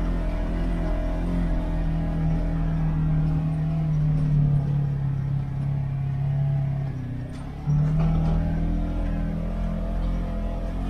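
Off-road vehicle's engine running steadily while driving a rough dirt trail, heard from inside the cab. The engine note sags slightly, then jumps back up sharply about eight seconds in.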